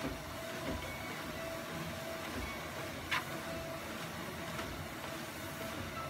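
Treadmill belt running under walking footsteps, with low thuds of each step on the deck about every second and a single sharp click about halfway through.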